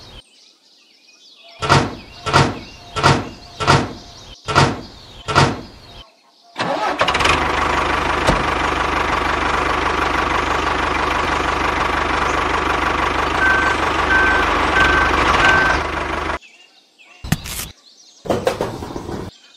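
Small wooden strips set down one after another on a toy trailer bed, about six sharp knocks, then a miniature tractor's motor starts about six seconds in and runs steadily for about ten seconds before cutting off.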